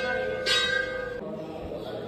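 Hindu temple bell struck twice, the second strike about half a second in, each ringing on in steady tones until it stops short a little after a second.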